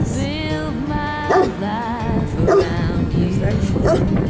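A dog barking three times, a little over a second apart, over background music with a singing voice.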